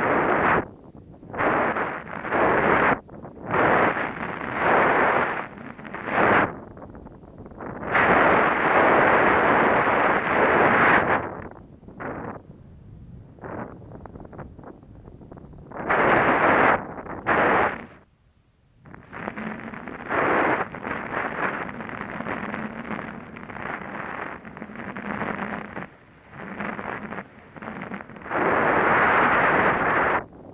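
Wind buffeting a helmet-mounted camera's microphone and the hiss of sliding through powder snow during a fast downhill run. The noise comes in loud, gusty surges that rise and fall, dropping away briefly about two-thirds of the way through.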